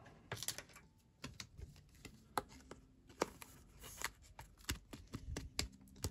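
Faint, irregular light clicks and taps of glossy trading cards being handled, slid and shuffled by hand.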